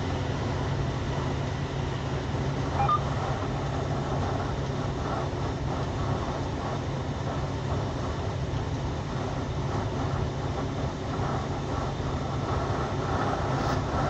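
Steady engine and road noise heard inside the cab of a moving vehicle, a constant low rumble under an even hiss.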